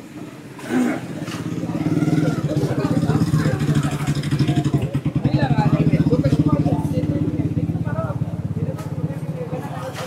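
A small engine running steadily and loud close by, building over the first couple of seconds and easing off near the end, with voices of passers-by over it.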